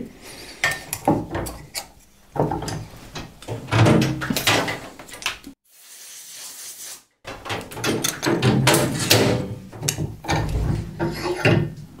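Steel bench vise being worked and sheet metal handled and clamped between its jaws: a run of irregular metal knocks, clicks and scrapes. The sound cuts out to dead silence for about a second and a half near the middle.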